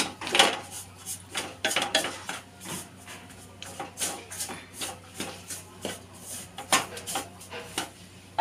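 Wooden spatula scraping and knocking against a metal kadhai while stirring a dry, crumbly roasted-semolina mixture, in irregular strokes two or three a second.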